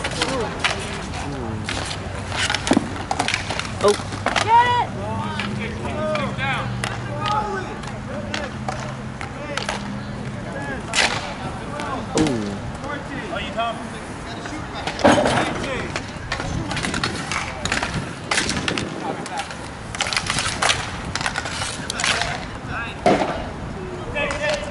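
Inline roller hockey play: skate wheels rolling on the rink surface, with repeated sharp clacks and knocks of sticks, puck and boards scattered throughout.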